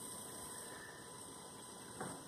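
Faint, steady background hiss with a low hum: quiet room tone, with no distinct sound event.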